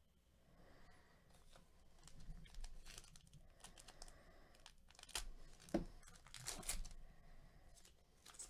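Foil wrapper of a Panini Elite Extra Edition baseball card pack being torn open and crinkled by hand: a run of irregular crackles and tears, loudest in the second half, with one sharp snap a little before six seconds.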